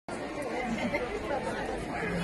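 Chatter of several people talking at once, an audience murmuring.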